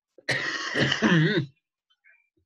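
A person clearing their throat once, about a second long: a rasping burst that ends in a short voiced part wavering in pitch.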